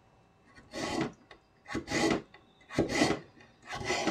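Kitchen knife slicing a carrot into thin strips on a wooden cutting board: four slow cuts, about one a second.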